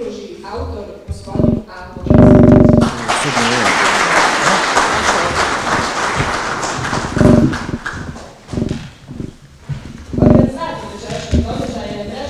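Indistinct speech over a public-address system, loud, with a dense noisy stretch lasting a few seconds in the middle.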